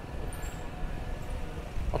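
Low, steady outdoor background rumble, with a few faint high chirps about half a second in.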